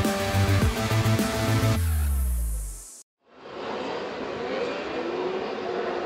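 Short music sting whose bass drops away in a falling sweep and cuts off about three seconds in. After a brief silence, a grid of 600cc race motorcycles is heard running at idle as a steady, distant engine hum with slight rises in pitch.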